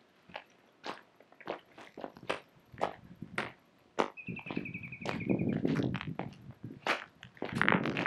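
Footsteps crunching on a stony gravel path at a walking pace, about two steps a second. About four seconds in, a bird gives one whistled call, a little over a second long and falling slightly in pitch.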